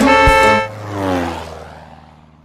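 A cartoon car-horn sound effect honks for about half a second, then a falling tone slides down in pitch and fades out over the next second or so.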